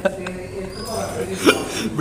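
Low, indistinct voices in a room, with one short, sharp vocal sound about one and a half seconds in.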